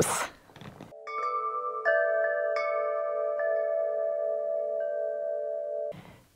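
A short burst of noise, then about half a dozen chime strikes from about a second in. Their bell-like tones ring on and overlap into a sustained chord that cuts off suddenly near the end: an added intro chime sound effect.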